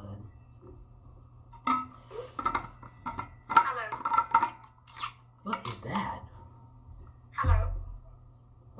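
Faint, indistinct talking from a mobile phone that has answered a call by itself, in several short bursts. A louder, short voice sound comes near the end.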